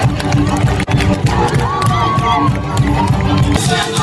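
Large outdoor concert crowd cheering and shouting, with the band's music playing underneath.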